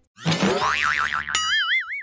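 Cartoon boing sound effect: a tone that warbles rapidly up and down, starting about a quarter second in and settling into a cleaner, slower wobble past halfway.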